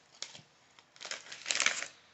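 Plastic snack bag of almonds crinkling as almonds are shaken out into a hand: a few light clicks at first, then a louder burst of crinkling about a second in.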